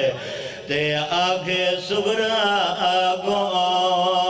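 A man chanting a Shia majlis recitation into a microphone, holding long wavering melodic notes. The voice drops briefly just under a second in, then carries on at full strength.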